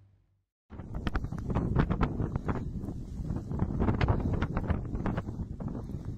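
Strong wind buffeting the microphone: a heavy rumble with crackling that starts suddenly about a second in after a brief silence.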